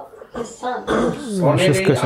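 Speech only: a man talking in a lively, rising and falling voice.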